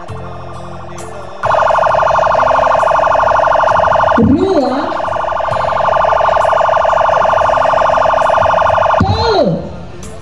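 A loud, steady, buzzing siren-like blare starts about a second and a half in and holds an unchanging pitch for about eight seconds. It dips briefly about halfway and cuts off near the end, with a voice calling out over it twice.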